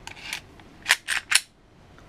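Glock 43 pistol being reassembled: the steel slide scrapes briefly along the polymer frame's rails, then three sharp clicks close together about a second in as the slide goes home and locks into place.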